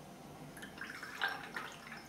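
Watercolour brush working in water: a quick run of short wet splashes and drips starting about half a second in, loudest around the middle.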